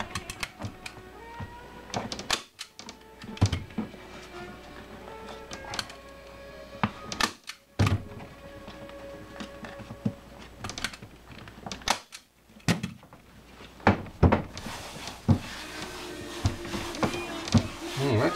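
Irregular sharp snaps and thunks from a hand staple gun driving staples through a vinyl seat cover into a plastic motorcycle seat pan, with knocks from the seat being handled between shots. Music plays faintly underneath.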